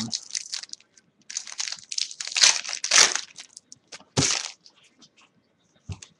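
Trading-card pack wrappers being torn open and crinkled by hand, with cards handled, in a few irregular bursts that are loudest in the middle; a light knock near the end.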